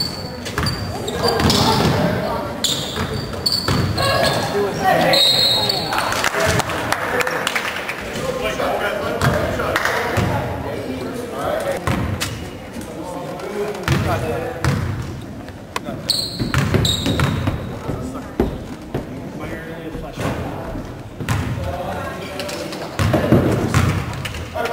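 A basketball bouncing on a hardwood gym floor as it is dribbled, with voices from the crowd and players going on throughout.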